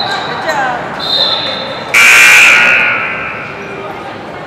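A referee's whistle sounds about a second in, held for just under a second. About two seconds in, the gym's scoreboard horn sounds, the loudest thing here, for about a second and a half before fading. Crowd and player voices carry on underneath in the large hall.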